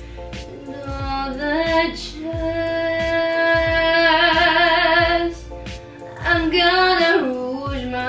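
A young woman singing solo, sliding up into her notes and holding one long note with vibrato through the middle, then starting a new phrase near the end. Underneath runs an accompaniment with a steady beat.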